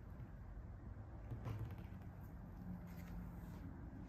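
Quiet room tone with a faint steady low hum, and one soft handling click about one and a half seconds in as a syringe is worked into a glass vial.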